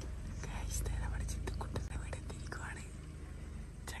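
A person whispering quietly close to the microphone, over a low steady hum with a few faint clicks.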